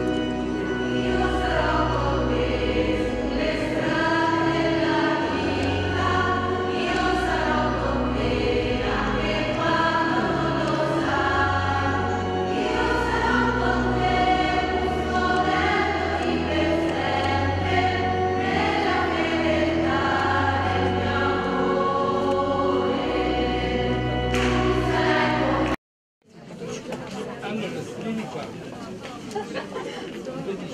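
Choir singing a hymn over instrumental accompaniment that holds long, low bass notes. The music cuts off abruptly near the end and gives way to crowd chatter.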